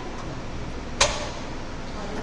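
A single sharp knock about a second in, over a steady background of room noise.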